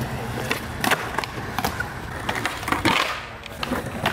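Skateboard on concrete: wheels rolling, with a series of sharp clacks as the board's tail and deck strike the ground during flatground tricks.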